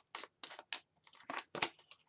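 Hands shuffling a deck of tarot cards: a quick, irregular run of short papery swishes and taps as the cards slide over one another.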